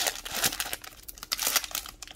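Foil collector booster pack wrapper crinkling and tearing as it is pulled open by hand, in a run of irregular crackles.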